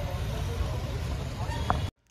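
Street traffic noise: a steady low rumble of passing cars and scooters with faint voices in the background, cutting off abruptly near the end.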